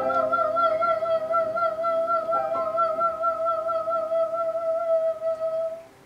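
A soprano holds one long high final note with a wide vibrato over sustained upright-piano chords, the piano moving to a new chord partway through. Voice and piano stop together just before the end, closing the song.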